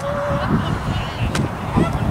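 Wind buffeting the microphone, with one held single-pitched call, like a goose honk or a drawn-out shout, ending about half a second in, and a sharp click near the middle.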